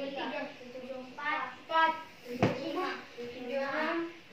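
Children's voices in a small room, with one sharp knock about two and a half seconds in.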